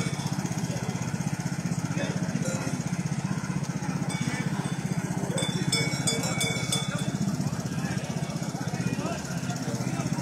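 A small engine idling steadily, with people chatting around it.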